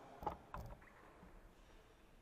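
Two short knocks about a third of a second apart, then faint room noise in a large hall.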